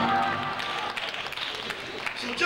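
Church organ holding a sustained chord under a pause in the sermon, fading out about half a second in, followed by scattered clapping and voices from the congregation.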